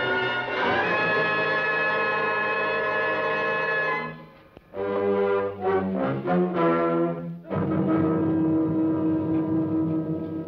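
Orchestral background music led by brass. Held chords give way about four seconds in to a brief pause, then a run of short, separate notes, then a long held chord.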